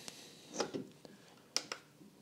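A soft short noise, then a sharp single click about one and a half seconds in: a button pressed on a handheld triple-lens endoscope camera, switching its view to another lens.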